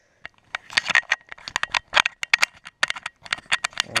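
Crinkling, rustling handling noise: a dense run of sharp crackles and short rustles with brief quiet gaps.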